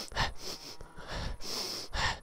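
A man breathing hard close to a helmet-mounted microphone: repeated breaths in and out, with a few faint knocks.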